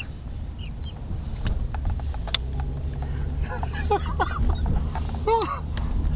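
Men laughing hard, in fits, inside a car's cabin over a steady low engine and road rumble. The laughter breaks out about three and a half seconds in and again near the end.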